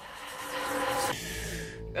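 Movie trailer soundtrack: music under a loud rushing blast from an explosion. The upper hiss drops away a little past a second in.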